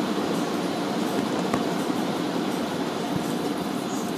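Automatic car wash tunnel machinery heard from inside a car: a steady, even rushing noise with a low rumble, muffled by the car body, and a couple of faint knocks.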